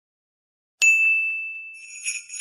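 A single bright bell chime struck once about a second in, ringing out and fading; near the end, sleigh bells start jingling for a Christmas intro.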